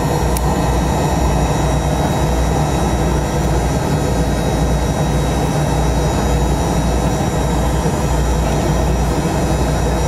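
Yak-40 airliner's three Ivchenko AI-25 turbofan engines running steadily, heard from inside the cabin as the aircraft rolls along the runway: a constant deep rumble with a thin high turbine whine above it.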